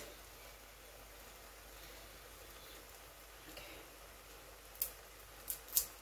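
Quiet room tone, then three or four short crackles near the end as a Maggi seasoning-cube wrapper is handled.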